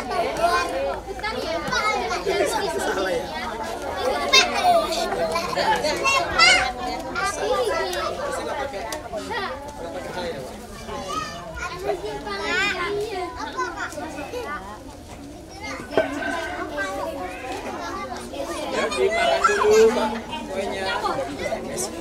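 A crowd of young children's voices chattering and calling out over one another, with high-pitched shouts and squeals.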